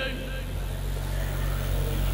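A steady low hum with a faint even background noise, and no other events.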